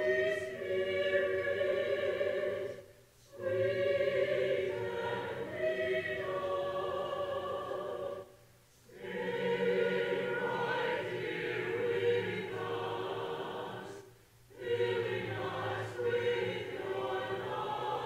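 Church choir singing sustained phrases, with three short breaks between the phrases.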